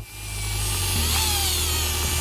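Dremel rotary tool motor running with a high whine that sinks slowly in pitch; a low hum joins about a second in. The owner thinks the Dremel is broken.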